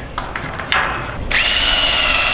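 A few light knocks as a wooden board is handled against the frame, then a power drill starts and runs with a steady whine, driving a screw through the one-by board into the wooden frame.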